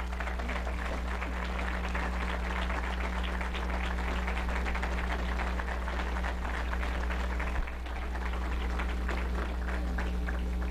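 Audience applauding steadily, with a low electrical hum underneath.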